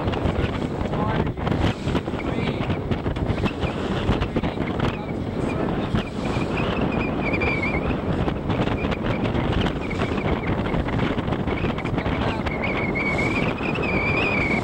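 Wind buffeting the microphone on a moving boat, over steady engine and water noise. A thin wavering whine comes in about five seconds in and again near the end.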